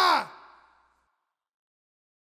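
The end of a stoner rock track: the band stops on a last held note that drops steeply in pitch and dies away within about half a second, then silence.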